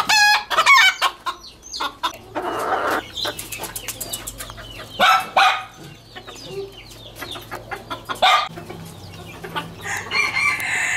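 Ornamental chickens clucking, with a rooster crowing at the start and more loud calls around five seconds in and just after eight seconds.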